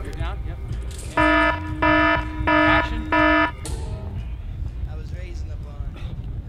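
An electronic alarm beeps four times at one steady pitch, each beep about half a second long and evenly spaced, stopping about three and a half seconds in. A low wind rumble on the microphone runs underneath.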